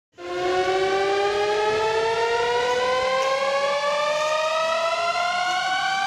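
A siren-like tone with a stack of overtones, rising slowly and steadily in pitch, like a siren winding up.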